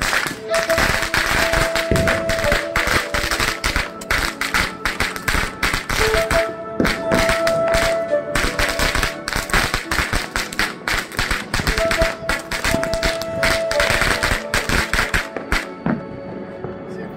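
Firecrackers crackling and popping in a dense, irregular string, with background music playing at the same time.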